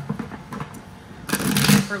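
A deck of tarot cards being shuffled by hand: soft rustling of card edges that swells into a louder burst of shuffling about a second and a half in.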